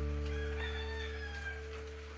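The last chord of background guitar music fading out, with a rooster crowing faintly in the background for about a second, starting shortly into the sound.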